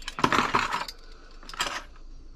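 Metal spoons and forks clinking and jingling against each other as they are rummaged through and lifted out of a drawer, in two bursts: a longer one starting about a quarter second in and a short one near the end.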